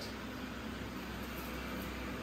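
Hand-pump garden-style sprayer spraying alkaline cleaning solution onto a tile floor: a steady hiss over a low, constant hum.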